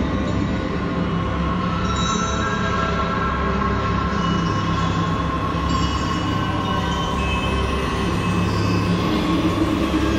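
Dark ambient soundtrack music: a dense, steady low rumbling drone under several long-held higher tones, with no breaks or beats.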